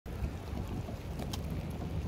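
Wind buffeting the microphone outdoors in light rain, a steady low rumble.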